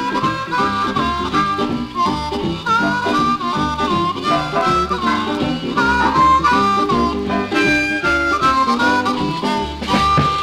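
Blues band instrumental: a harmonica plays a lead line with bent notes over guitar, bass and drums keeping a steady beat.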